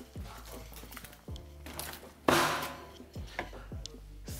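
Scattered handling and movement noise as a heavy hardcover omnibus is carried, then a sudden thud with a short fading rustle about two seconds in as the 3.9 kg book is set down on an electronic platform scale.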